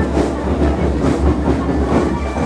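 School marching percussion band playing: drums and cymbals keeping a steady driving beat.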